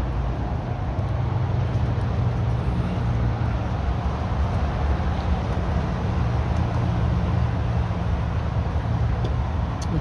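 Steady low rumble of road traffic, with no single vehicle standing out.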